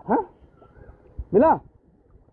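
Two short, high-pitched shouts from a person's voice, the second an excited cry of 'mila' ('got it!') about a second in.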